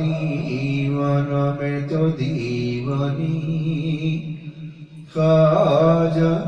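A man's voice chanting a devotional Islamic litany (darood) in long held, melodic notes. It trails off about four seconds in and starts again loudly just after five seconds.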